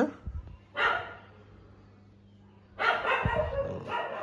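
A dog barking in two bouts about two seconds apart, with a few low thumps near the start.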